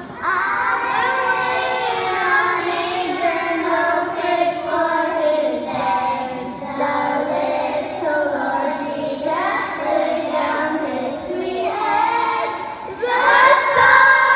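A children's choir singing together, getting louder about a second before the end.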